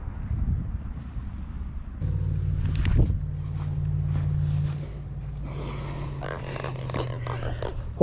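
A big catfish being landed on a grassy bank: splashing, rustling and scattered knocks as it is hauled out and gripped, with a sharp knock about three seconds in. Rumbling handling noise on the microphone throughout, and a low steady hum from about two seconds in until near the end.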